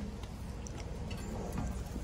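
Faint steady low rumble with light background noise, and no distinct sound events.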